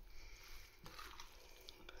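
Faint, soft squishing of rice salad coated in salad cream as it is stirred and folded with a spoon in a glass bowl, with a few light spoon contacts.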